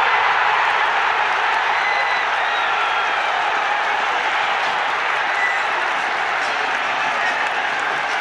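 Football stadium crowd cheering and applauding a goal, a steady wall of noise that holds at an even level throughout.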